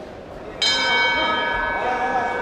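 Ring bell struck once about half a second in, ringing on with many clear tones that fade slowly, marking the start of a round.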